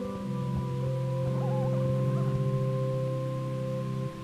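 Slow, sustained chords held on a keyboard instrument as church music between parts of the Mass, shifting to a new chord about a quarter second in.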